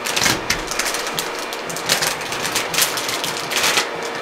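Grey plastic anti-static bag crinkling and rustling as it is handled: a steady crackle with louder crinkles scattered through.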